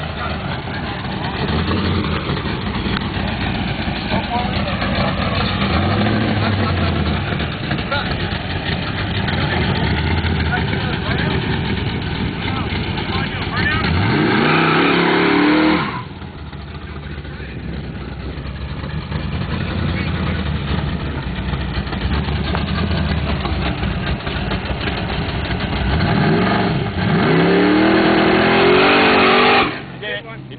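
Drag car engine running steadily, then revving up in a rising sweep about 14 seconds in that cuts off abruptly at 16 seconds. A second rising sweep starts near the end as a car accelerates.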